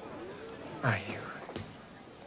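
Low murmur of indistinct voices, with one short, louder vocal sound about a second in that rises in pitch.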